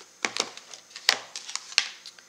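Lid taken off a plastic tub of white embossing powder and the tub set down: a few sharp plastic clicks and knocks, the loudest about a second in and another near the end.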